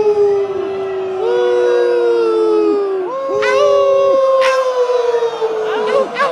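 Two men's voices howling long, drawn-out notes through handheld microphones, often overlapping. Each note is held for a second or two and sags slightly in pitch before breaking off.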